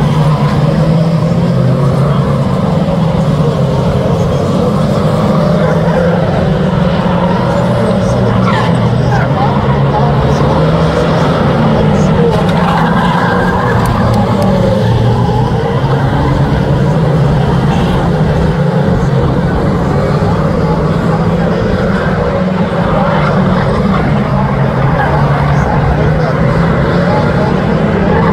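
Several 2-litre saloon stock cars racing round an oval, a continuous loud mix of engines whose pitch wavers up and down as the cars accelerate, lift and pass.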